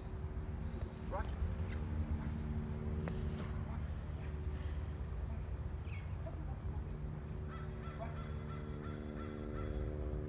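Outdoor background of a steady low rumble from street traffic, with a few short bird chirps near the start.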